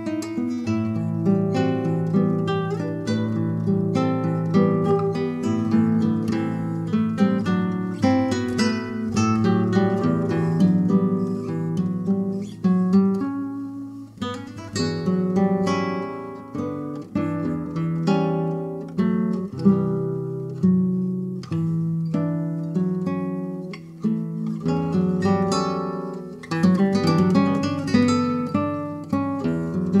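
Two classical guitars playing a duet, a steady flow of plucked notes.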